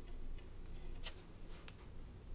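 Three faint, short clicks about half a second apart, the middle one the loudest, over a low steady hum.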